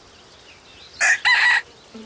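Rooster giving a brief, loud two-part crow about a second in, lasting about half a second.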